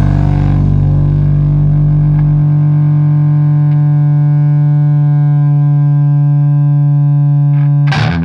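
Rock band's closing chord: distorted electric guitar and bass held on one chord as the cymbal wash fades in the first second. The deepest bass note drops out about two and a half seconds in, and the guitar chord rings on until it is stopped right at the end.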